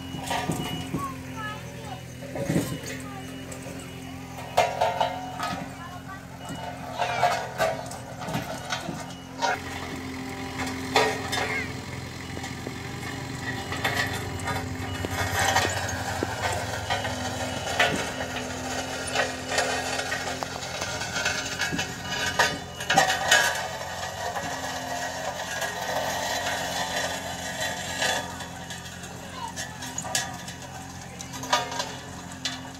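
Diesel engine of a Sakai tandem road roller running steadily with a low, even hum as the roller works over a loose gravel road; people's voices are heard over it.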